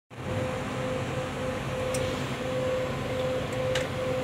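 A steady mechanical hum with a thin, steady tone running through it, and two faint clicks, one about halfway through and one near the end.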